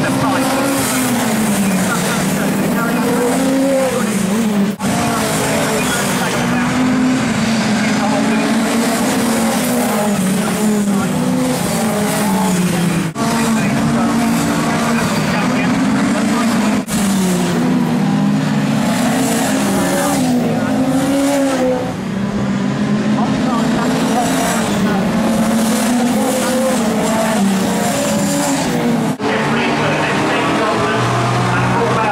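Several race car engines running hard as a pack of Classic Hot Rod saloons laps the circuit. The engines overlap, their pitch rising and falling with acceleration and lifting off.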